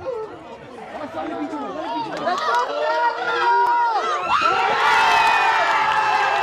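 Crowd of spectators at a soccer match shouting as an attack builds, then erupting into loud cheering about four seconds in as a goal is scored.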